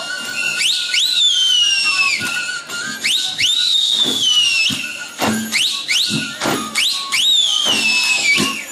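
Shrill whistles, three in all, each shooting up and then sliding slowly down, over large goatskin frame drums beaten in irregular strokes, as a Romanian New Year's troupe of well-wishers (urători) performs.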